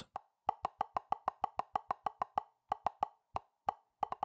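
Drum practice pad snare pattern heard through the soloed trigger section of the SPL DrumXchanger plug-in, its transient gain pushed up: short, dry, clicky taps, about six a second in runs with brief gaps.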